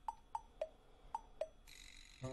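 Five short, sharp pitched ticks in two alternating pitches, spaced irregularly about a quarter to half a second apart, like sparse percussive notes in the background music.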